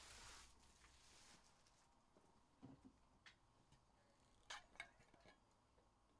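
Very faint crinkling of a trading-card pack wrapper for the first second or so, then a few light clicks and taps, the loudest two close together about four and a half seconds in.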